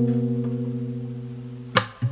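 Acoustic guitar chord ringing out and slowly fading, then a new strum near the end.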